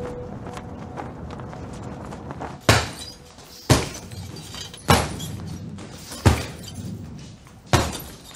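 Gloved punches landing on a leather heavy bag: five hard thuds about a second apart, starting near three seconds in, over a faint steady background.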